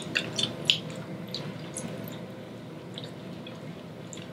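Close-miked eating sounds: a few soft, wet mouth clicks and lip smacks as people chew fried chicken, thinning out after about a second and a half and leaving a faint steady room hum.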